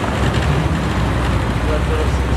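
Chevrolet Corvette Z06 V8 engine rumbling steadily at low revs as the car rolls slowly through an intersection, over street traffic noise.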